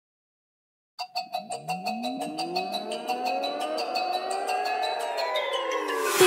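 Silence for about a second, then an electronic riser: a fast, even run of ticks under tones that sweep up in pitch, with a few gliding down near the end, building in loudness into the music.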